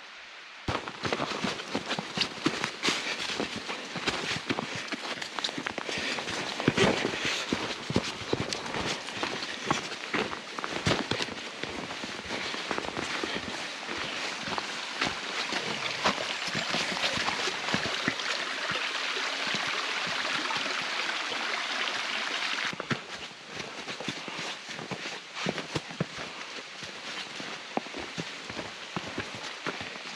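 Footsteps crunching on a thin layer of snow over dry leaf litter, a dense crackle of many small irregular crunches. It thins out about two-thirds of the way through.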